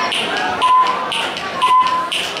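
Countdown soundtrack played over the hall's speakers: a tick and a short beep about once a second, keeping time with the count.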